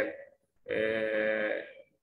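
A man's voice holding a drawn-out hesitation sound at one steady pitch between phrases, starting about half a second in and lasting about a second.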